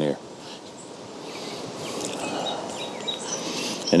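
Outdoor garden ambience: a soft rushing noise that swells gently toward the middle, with a few faint, short high chirps in the second half.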